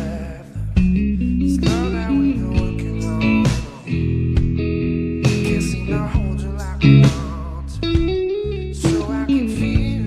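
Electric guitar, a Stratocaster-style solid body, playing lead lines with string bends and vibrato. It plays over a backing track with a steady bass line and drums.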